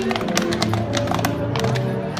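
A tuba ensemble playing low, sustained notes, with horses' hooves clip-clopping on pavement as a carriage passes.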